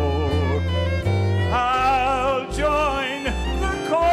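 Live Southern gospel music: a fiddle plays a lead line of long, vibrato-rich notes over piano and bass.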